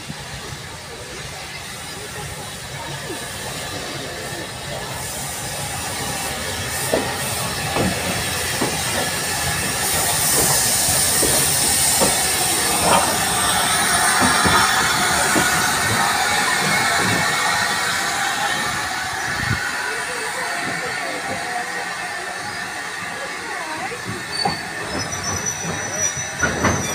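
Steam tank locomotive moving slowly along the track onto its carriages, with wheels squealing and clicking over the rails. A loud hiss of steam comes in about ten seconds in, as the engine comes up to the coaches.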